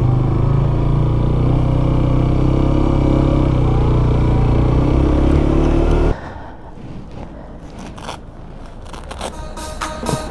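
Motorcycle engine running while riding at low speed through town, its pitch rising and falling slightly with the throttle. It cuts off abruptly about six seconds in, leaving a much quieter background with a few clicks.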